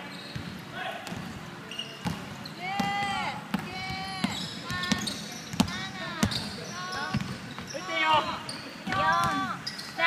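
Basketball shoes squeaking over and over on a hardwood court, short rising-and-falling squeals, with a basketball bouncing in an echoing gym.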